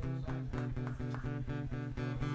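Guitar playing a steady run of plucked notes, about four a second, over sustained low notes.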